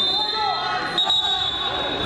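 Wrestling hall sound during a standing exchange: indistinct voices calling out over the bout, with thuds and shuffling from the mat, and a steady high-pitched tone that drops out briefly about a second in.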